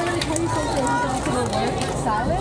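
Several voices of volleyball players and spectators talking and calling over one another, with a few light taps scattered through.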